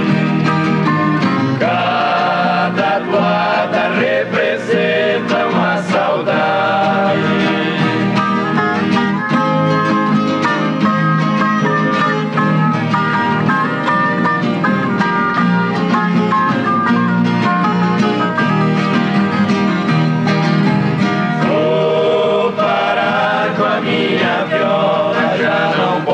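An ensemble of violas caipira, the Brazilian ten-string folk guitars, playing together, with dense plucked and strummed notes throughout.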